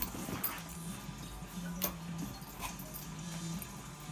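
Dogs play-wrestling, with dog noises and a few sharp knocks and scuffles, over low background music.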